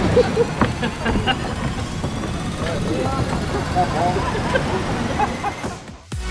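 Women laughing and chattering after a fright, in short bursts of 'ha, ha', over a steady low outdoor rumble. The sound drops away sharply just before the end.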